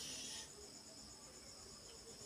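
Faint, steady, high-pitched insect chirping, pulsing rapidly and evenly, with a brief soft hiss at the very start.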